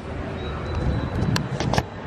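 Wind buffeting and handling noise on a handheld camera's microphone while the camera is swung round outdoors: an uneven low rumble, with a few sharp clicks in the second half.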